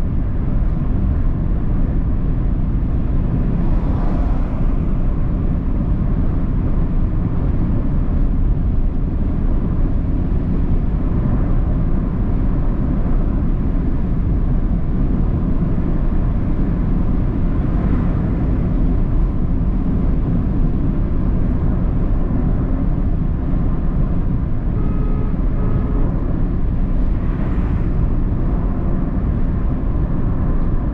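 A car driving at steady speed, heard from inside the cabin: a constant low rumble of engine and tyre noise on the asphalt.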